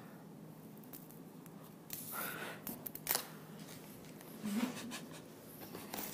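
Faint small clicks and rustling of strands of tiny faceted gemstone beads being handled, with a couple of sharper clicks about three seconds in.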